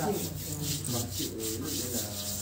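Palms rubbing together, a dry brushing sound, with a low voice faintly underneath.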